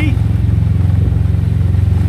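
Kawasaki Versys 650 parallel-twin engine running steadily with an even pulse, heard from on board the moving motorcycle.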